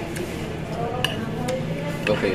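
Murmur of background voices with three sharp clinks of tableware; the loudest clink comes about a second in.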